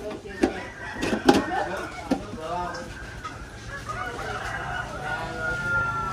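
A few sharp knocks in the first second and a half, then a rooster crowing in the background from about four seconds in, its call ending in a long held note near the end.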